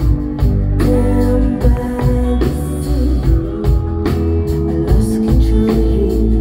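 Live band playing a slow trip-hop song over a concert PA, heard from the audience: drum kit, sustained bass notes, keyboards and electric guitar.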